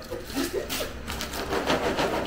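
Gift-wrapping paper crinkling and rustling in quick irregular crackles as a wrapped present is handled and lifted.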